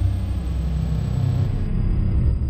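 A deep, steady low rumbling drone, a sound effect laid under a starry outro card.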